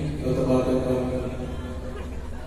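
A man's voice over the arena's PA system, held on long drawn-out notes in a chant-like way, with a steady low hum underneath.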